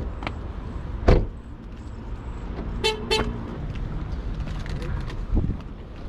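A car door slams shut about a second in. Around three seconds in, the car's horn gives two short chirps, as when the car is locked with the key fob. A steady low rumble of wind on the microphone runs underneath.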